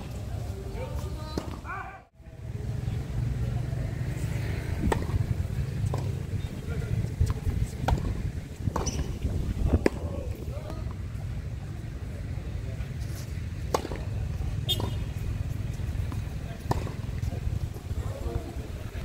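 Tennis balls struck by racquets during doubles rallies: sharp pops, some about a second apart, over a steady low rumble, with voices from players and onlookers.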